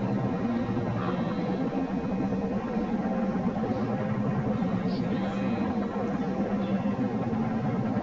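A man's voice making sounds with no words, over background music with guitar.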